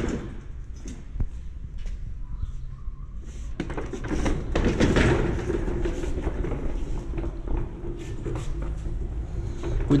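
Handling noise of a large speaker cabinet being moved by hand across a tiled floor: scattered knocks and clicks over a low rumble, busiest about four to six seconds in.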